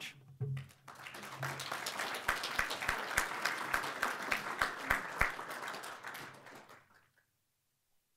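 Audience applauding, building over the first couple of seconds and dying away about seven seconds in.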